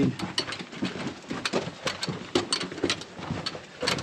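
Footsteps crunching on loose rock and gravel on a mine tunnel floor: a string of short, irregular steps and scuffs.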